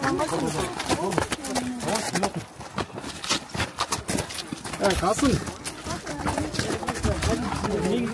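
People talking, with many short, sharp knocks and clicks scattered through the talk.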